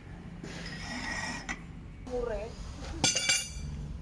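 Metal clinking against metal, with one bright, ringing strike about three seconds in, as tools work on the heavy roller's wheel bolts.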